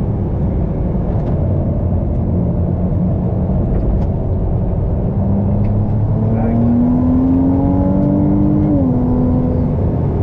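Ferrari 296 GTB's twin-turbo V6 running at speed over steady road and wind noise. About six seconds in, its pitch climbs steadily under acceleration, then drops suddenly near the end on an upshift.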